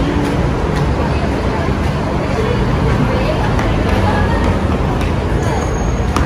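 Busy city street ambience: a steady rumble of traffic under a murmur of passers-by talking.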